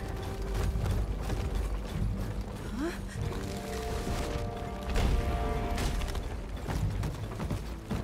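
Cartoon soundtrack of music mixed with mechanical clicking sound effects, with a short rising tone about three seconds in.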